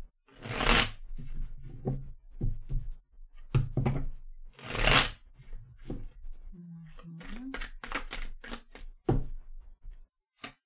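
Tarot cards being shuffled by hand. There are two longer rushes of shuffling, about half a second and five seconds in, between many short taps and slaps of the cards.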